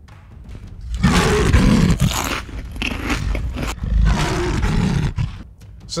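A loud, rough, throaty roar in two long stretches: one lasting about a second and a half, then one lasting nearly three seconds.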